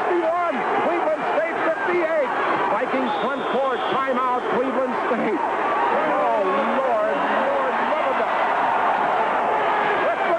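Basketball arena crowd, many voices shouting at once in a steady din, heard through an old radio broadcast recording with a thin, muffled sound.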